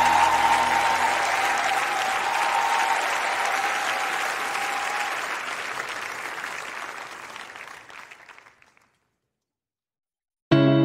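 Audience applause at the end of a live song, with the music's last held note fading out about halfway through. The applause then dies away to silence shortly before the end.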